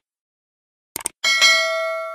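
A quick double mouse click, then a bell ding with several clear ringing tones that fades slowly: a subscribe-button click and notification-bell sound effect.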